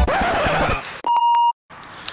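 Edited-in sound effects: a falling whoosh as the background music winds down, then a single steady electronic beep lasting about half a second, like a censor bleep. It cuts off abruptly to a moment of silence and then faint background noise.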